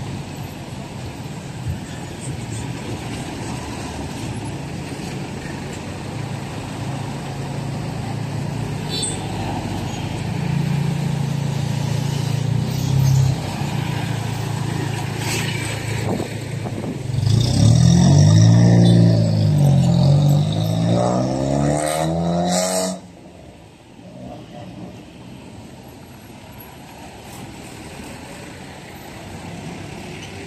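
Road traffic at a busy intersection: cars, motorcycles and jeepneys passing close by. A nearby engine's drone grows loud and shifts in pitch, then drops away suddenly about two-thirds of the way through, leaving quieter traffic.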